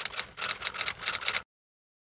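Typewriter sound effect: a quick run of key clicks as a date is typed out letter by letter, cutting off suddenly about a second and a half in.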